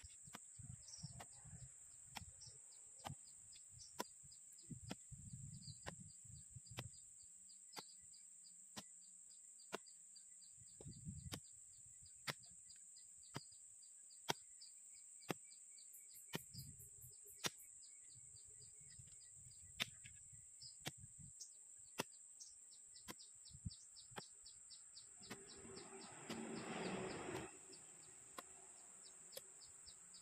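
Faint outdoor ambience: a steady high insect drone with bird chirps, and sharp knocks about once a second as a hoe chops into hard, rocky clay. Near the end, a louder noisy sound lasts about two seconds.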